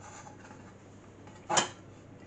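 Pastry being pressed with the fingers into a metal bun tray, with a single short clunk of the tin about one and a half seconds in.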